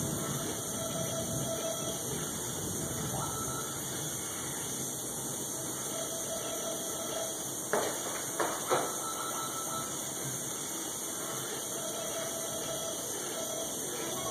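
Steady hiss with faint tones that come and go, and three sharp knocks in quick succession a little past the middle.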